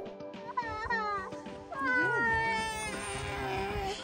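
Intro jingle music with a low beat. Over it come two short high calls that rise and fall, then one long, slowly falling high call.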